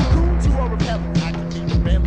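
Underground hip hop beat played from a 1996 cassette: a steady bassline and drum hits about three a second, with pitch-sliding sounds over the top.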